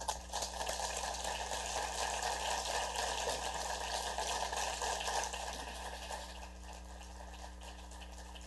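Audience applauding, a steady patter of clapping that dies away about two seconds before the end.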